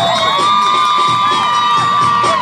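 Crowd cheering and screaming, many high-pitched voices overlapping in long, held shouts.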